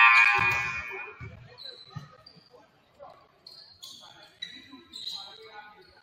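Basketball bouncing a few times on a hardwood gym floor, under a loud voice at the start that fades over about a second, then scattered quieter voices around the court.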